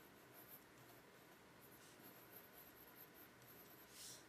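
Faint scratching of a mechanical pencil's graphite sketching quick strokes on paper.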